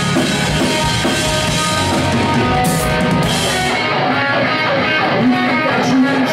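Rock band playing live: electric guitars, bass and drum kit, loud and full. The cymbals drop out about four seconds in while guitars and drums keep going.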